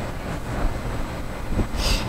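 Steady low rumble of background room noise, with a short hiss near the end as a voice starts up again.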